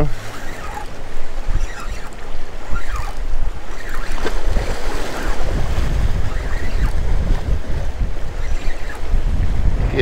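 Wind buffeting the microphone over waves washing against jetty rocks, the low wind rumble growing heavier about halfway through.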